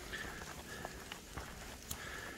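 Faint sounds of walking a leaf-covered dirt trail in light rain: soft footfalls and scattered small ticks of patter over a low hush, with a faint thin high tone near the start and again near the end.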